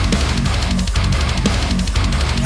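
Heavy metal band playing an instrumental passage: distorted electric guitars on a riff that repeats about twice a second, over a driving drum kit with cymbal hits.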